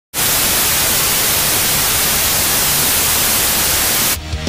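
Loud, steady hiss of TV-style static noise, starting abruptly a moment in.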